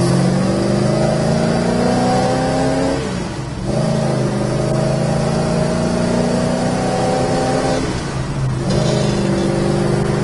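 1970 Dodge Charger's 383 four-barrel V8 pulling under acceleration, heard from inside the cabin. The engine note climbs steadily, breaks off about three seconds in and resumes at a lower pitch, then breaks again about eight seconds in, as the car shifts up through the gears.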